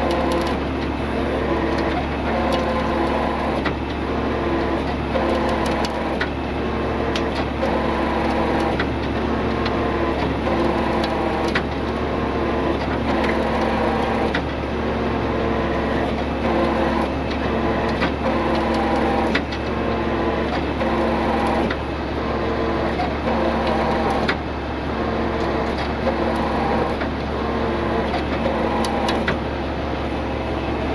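Tow truck engine running at a steady speed to power its winch during a vehicle recovery, with a pulsing that repeats about every second and a half and scattered short clicks.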